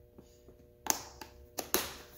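A few short, sharp plastic clicks and taps as a clear plastic compartment organizer box is handled: a strong click just under a second in, a lighter one after it, then two close together.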